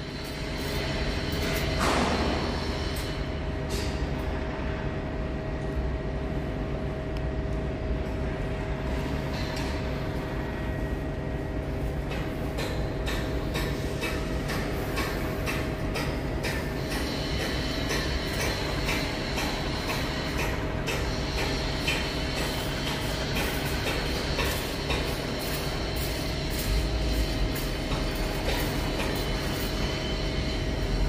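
Heavy lifting machinery running with a steady hum and two held tones while a steel roof truss is hoisted by crane. From about twelve seconds in, a run of short sharp clicks joins the hum.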